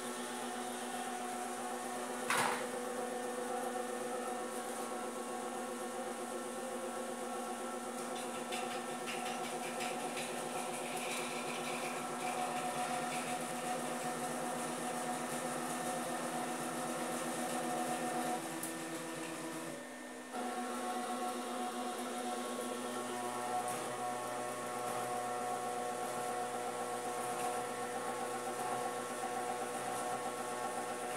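Electric motors of a wall-painting robot running as it drives its paint roller over the wall: a steady whine made of several fixed tones. There is a single click about two seconds in, and about two-thirds of the way through the motor note briefly drops out and comes back on a slightly different pitch.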